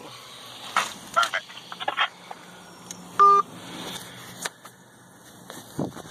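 A single short electronic beep, a steady pitch with overtones, about halfway through, over faint handling noises and a low background.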